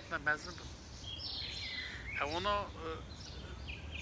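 A man talking, with small birds chirping in the background: short high phrases about a second in and again near the end.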